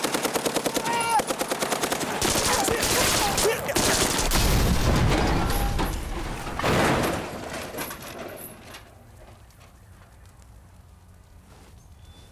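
Belt-fed machine gun firing a long rapid burst, followed by a large explosion of a police car, with a deep rumble that swells and then dies away over several seconds.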